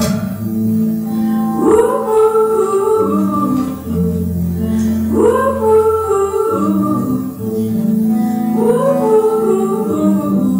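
A woman singing a slow song to her own acoustic guitar accompaniment. Her notes are long and held, and each new phrase begins with an upward slide, about every three and a half seconds.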